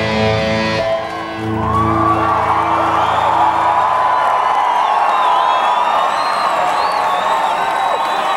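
Live metal band's held, distorted electric guitar chord stops about a second in; a low note lingers for a couple of seconds and dies away while the audience cheers and screams.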